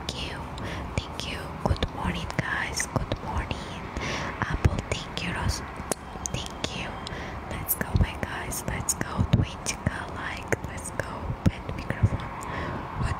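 A woman whispering close into a microphone, with many small wet clicks of the lips and tongue scattered through the breathy whisper.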